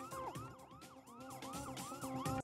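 Police car siren sounding a fast rising-and-falling yelp, about three sweeps a second.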